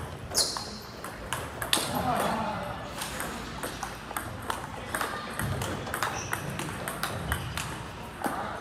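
Table tennis balls clicking off paddles and the table in fast rallies, a quick run of sharp ticks, the strongest about half a second and near two seconds in. People talk in the background.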